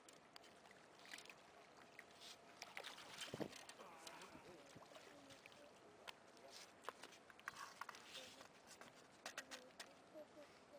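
Faint, indistinct voices with scattered small knocks and clicks, the loudest about three and a half seconds in.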